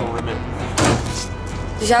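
A single short thud or clunk a little under a second in, over steady background music.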